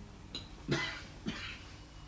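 A man giving a few short, quiet coughs, clearing his throat in the first second and a half.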